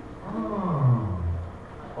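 A man's drawn-out wordless vocal sound through a microphone and PA, sliding down in pitch over about a second and then holding low.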